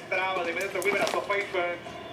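A man speaking: Spanish-language television football commentary.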